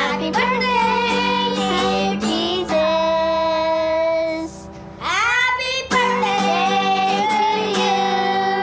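Children singing a birthday song together over a strummed acoustic guitar. About three seconds in the voices hold one long note, then slide upward into the next line.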